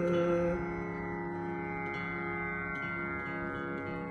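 A held sung note ends about half a second in, leaving the strings of a swarmandal (surmandal) ringing as a steady drone of many sustained tones. This is the slow opening of a khyal in raag Kalyan.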